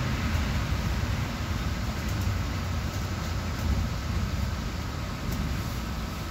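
Inside a city bus on the move: steady engine and road rumble heard from the passenger cabin.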